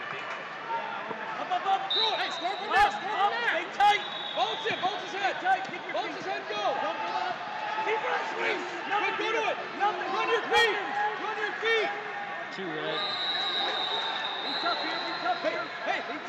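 Many overlapping voices of spectators and coaches in a large tournament hall, with a few sharp thuds. A steady high tone sounds twice, once for about two seconds and once for about three.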